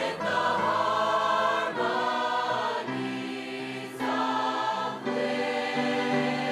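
A school concert choir of about fifty mixed voices singing in harmony, holding sustained chords that change about every second.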